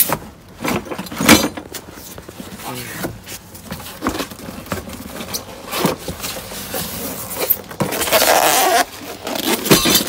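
Cardboard box of a new combi boiler being opened and handled: flaps scraping and rustling in irregular bursts, with a longer stretch of rustling near the end.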